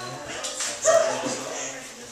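Scattered chatter of several voices, with one short, loud, high-pitched vocal sound just under a second in.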